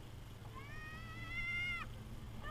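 A high-pitched, drawn-out squeal rising slightly in pitch for about a second and a half, then cutting off sharply. Under it runs the low, steady hum of the Nissan Pathfinder's engine as the truck crawls over a dirt mound.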